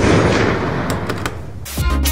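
A loud boom-like sound effect dying away over about two seconds, then background dance music with a steady beat starts near the end.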